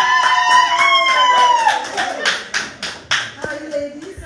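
A woman's long, high-pitched cheering call of welcome, followed by a run of rapid hand claps lasting about two seconds.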